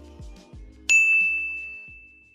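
Background music winding down, then a single high bell-like ding about a second in that rings out on one clear tone and fades away.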